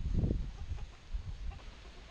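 Chickens clucking faintly, a few short clucks.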